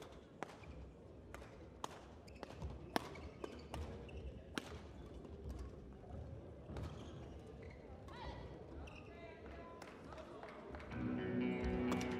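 Badminton rally: a string of sharp racket strikes on a feather shuttlecock mixed with the players' footwork on the court. Music comes in about eleven seconds in.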